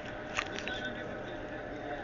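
Faint steady room hum with a few small clicks and rubs as a handheld camera is moved and handled; no drumming or rhythmic beat is heard.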